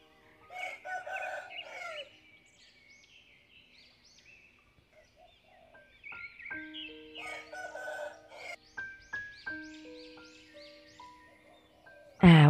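A rooster crowing twice, with small birds chirping throughout. Soft background music with held notes comes in about halfway through.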